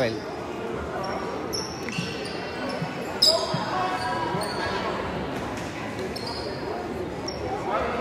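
Basketball gym sound during a game: a ball bouncing on the hardwood court, several short high squeaks of sneakers, and spectators' voices echoing in the large hall.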